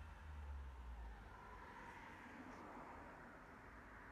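Near silence: faint room tone, with a low rumble in the first second that fades away.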